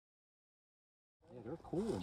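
Dead silence for a little over a second, then outdoor background sound cuts in and a man starts talking.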